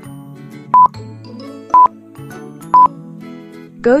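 Quiz countdown-timer beeps: a short, high electronic beep once a second, three times, over light background music.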